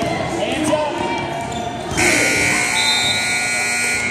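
Gym scoreboard buzzer sounding about two seconds in, a loud steady tone held for about two seconds that cuts off sharply: the game clock running out at the end of the fourth quarter. Before it, a basketball is dribbled on the hardwood floor over voices.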